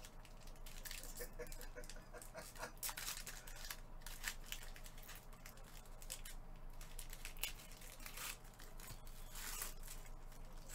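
A trading-card pack's silvery wrapper being torn open and crinkled by gloved hands: a run of short, irregular crackles and rustles.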